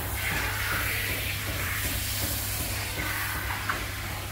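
Handheld dog-wash sprayer hissing steadily as water jets onto a basset hound's coat, with background music under it.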